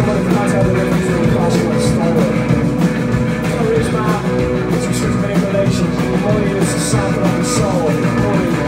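Live rock band playing loudly: distorted electric guitars, bass and drums with cymbal crashes, and a male singer singing into the microphone.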